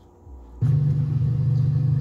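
Steady low rumble of street traffic behind a TV news reporter's live shot, played back through a computer's speakers, starting suddenly about half a second in.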